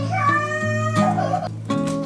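Background acoustic guitar music, with a cat meowing once, drawn out and rising, over it in the first second.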